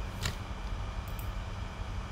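Steady low room hum, with one faint click about a quarter of a second in.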